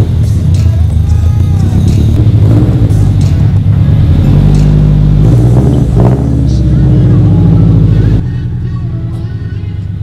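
Scion FR-S's 2.0-litre flat-four boxer engine running loud through an aftermarket single-tip exhaust, just after start-up. The level drops about eight seconds in.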